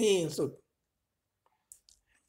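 A voice reading Thai finishes a word and stops, leaving silence. Near the end come two or three short, quiet clicks.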